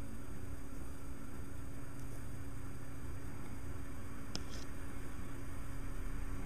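Steady low background hum and hiss, with one faint click about four and a half seconds in.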